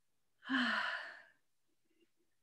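A woman's deep breath out, one audible sigh starting about half a second in and fading within a second.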